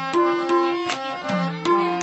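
Harmonium playing a melody in held reed notes, with a hand drum striking along at about two to three strokes a second.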